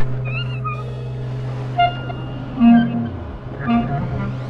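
Free improvisation on drum kit and bass clarinet: a steady low drone under scattered short pitched blips and high squeaky, cry-like tones, with a falling glide about two and a half seconds in.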